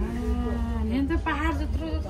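A person's voice held on one long low note for about a second, then wavering up and down in pitch, over a steady low rumble.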